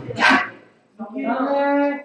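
Young men's voices: a short loud shout at the start, then about a second in a long held call on one pitch.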